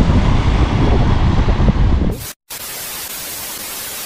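Wind and road rumble on the microphone of a moving electric motorbike, then about two seconds in, a TV-static hiss from an editing transition effect cuts in, with a brief dropout, and stops abruptly at the end.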